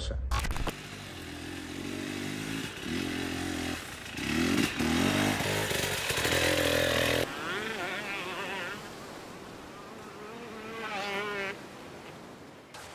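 Enduro dirt bike engine revving, its pitch rising and falling as it rides, then quieter from about seven seconds in.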